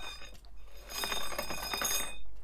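Metal bars of a shoe rack rattling and clinking in their frame as the rack is handled, a fast run of light clicks with a high ringing over them, mostly in the second half.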